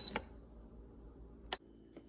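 Button on an Aroma digital rice cooker's control panel being pressed: a sharp click and a short high beep, then another click with a brief beep about a second and a half in.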